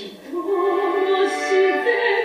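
A woman singing a Japanese cabaret song in a trained voice. She comes in about a third of a second in and holds a note with vibrato.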